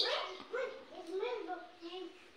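A high-pitched voice speaking in a string of short syllables, each rising and falling in pitch.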